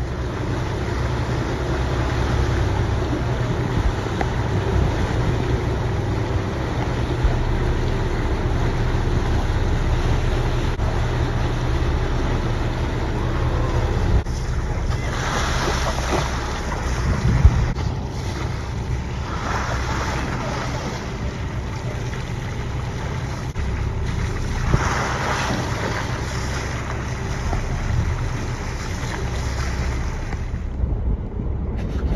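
A boat's engine running steadily at idle under wind and water noise. Short splashing rushes come about halfway through, again a few seconds later and near the end, as bottlenose dolphins surface beside the hull.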